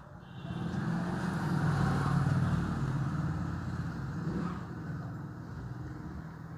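A low engine rumble from a passing motor vehicle, swelling over the first two seconds and then fading away.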